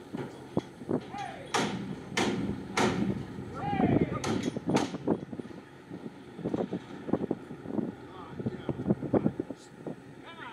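Cattle unloading from a livestock semi-trailer: hooves knocking and banging on the metal trailer floor and ramp, loudest in the first half, with a few short calls mixed in.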